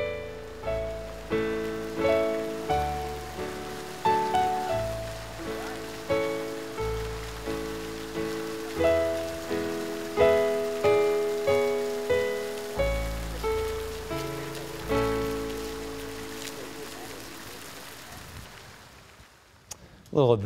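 Background piano music, slow single notes struck about every two-thirds of a second over sustained bass notes, fading out over the last few seconds.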